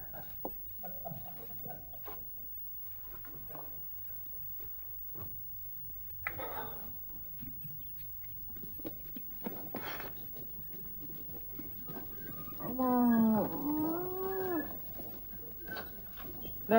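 A farm animal calls once, about two seconds long, a little before the end. The call is pitched and bends down and then up. Before it there are only faint background sounds and a few light knocks.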